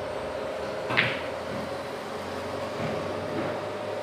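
Pool cue striking the cue ball on a bar pool table: one sharp click about a second in, with a steady hum underneath.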